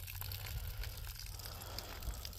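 Faint steady low rumble under light background hiss, with a few small clicks.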